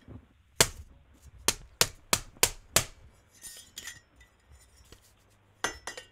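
A phone slammed angrily against a hard surface: six sharp knocks in quick succession in the first three seconds, then one more near the end.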